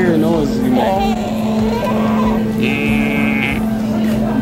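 A baby making playful vocal noises, with a brief high-pitched squeal about three seconds in, over a steady background hum.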